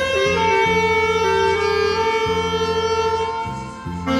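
Saxophone playing a slow melody outdoors: a short rising phrase, then one long held note with vibrato that fades away near the end, over a steady low accompaniment.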